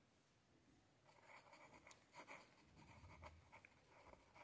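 Faint scratching of a ballpoint pen writing on lined notebook paper, in short strokes that start about a second in.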